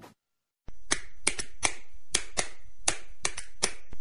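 Hands clapping in sharp single claps, about three a second and unevenly spaced, starting after a brief gap of silence.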